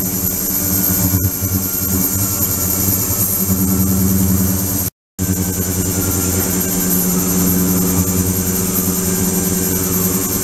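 A 72 kHz, 300 W ultrasonic tank running with its water agitated: a steady, pulsing electrical hum with a high whine above it. The sound cuts out for a moment about halfway through.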